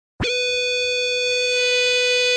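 A single steady high electric guitar tone, the held note that opens a hardcore punk song, setting in a fraction of a second in and sustaining without change.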